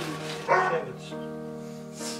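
A dog barks once, about half a second in, over background music with held notes.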